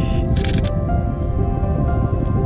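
Background music with held notes; about half a second in, a quick cluster of sharp clicks from a Canon EOS 250D DSLR's shutter firing.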